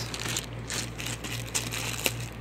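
Clear plastic bag of dice handled, giving a few faint, brief crinkles, over a low steady hum.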